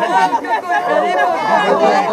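Many overlapping voices of mourners wailing and crying aloud, with one long wavering wail held from about halfway through.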